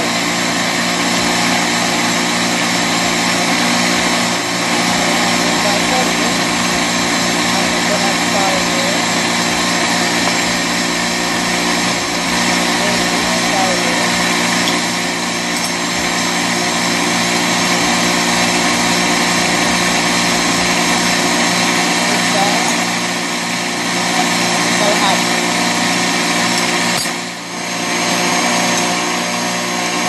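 Electric mixer running steadily as cake batter is beaten, briefly dipping about three seconds before the end.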